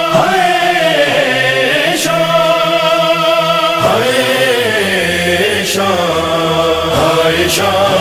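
Noha introduction: a chorus of voices holding a wordless chant in layered, sustained notes that slowly bend in pitch, with a few sharp hits scattered through it. Near the end a solo voice begins the recitation with 'Shah'.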